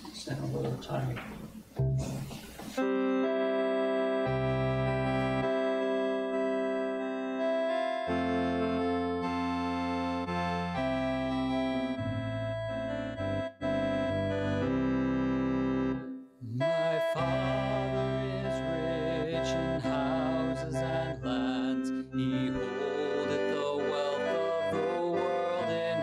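Organ playing the introduction to a hymn in long, steady held chords that change every few seconds. About two-thirds of the way through, the congregation begins singing over it.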